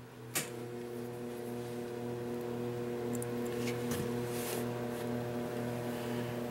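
A steady electrical hum with a low buzzing pitch and its overtones, picking up after a single click about half a second in.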